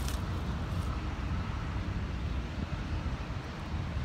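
A steady low rumbling background noise with no distinct events.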